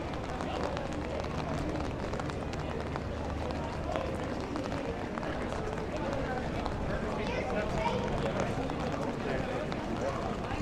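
Busy pedestrian street: indistinct chatter of passers-by and footsteps on wet paving stones, with a low steady hum through the first half.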